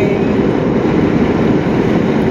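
Steady road and engine noise inside a Jeep's cabin while driving, with a constant low drone.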